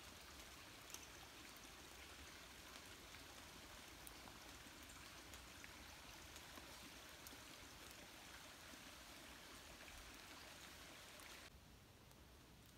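Faint, steady rush of a small forest creek, with a few light ticks of raindrops still dripping after rain. The sound drops away shortly before the end.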